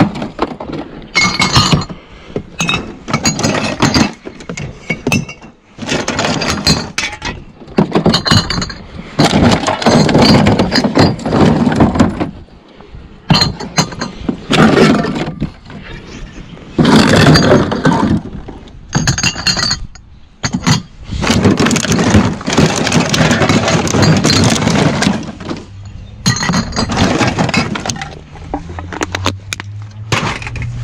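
Glass bottles, plastic bottles and cans knocking and clinking against each other as they are rummaged through and lifted out of a plastic curbside recycling bin. The clatter comes in irregular bursts with short pauses between handfuls.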